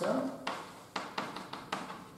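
Chalk tapping and scraping on a blackboard as letters are written: about five sharp taps with short scratches between them.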